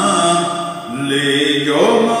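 A man singing an Urdu naat in long, wavering held notes over a steady background accompaniment.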